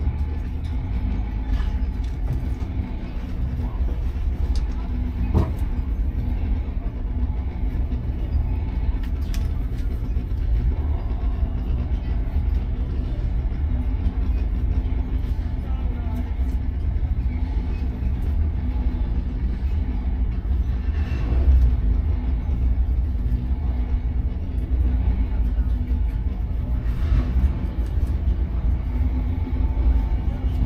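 Vintage Porsche race car's engine idling with a steady low rumble, heard from inside the cockpit.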